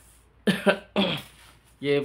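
A man's short laugh: three quick, breathy bursts in the first half, after which he starts talking again.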